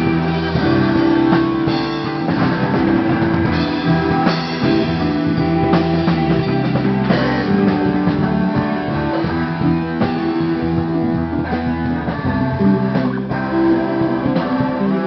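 Rock band playing live: bass guitar and electric guitars with drums, loud and steady throughout.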